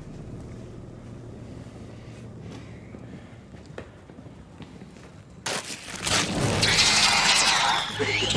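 Horror-film soundtrack: a quiet, steady low drone, then about five and a half seconds in a sudden loud burst of harsh noise with shrill, wavering shrieks.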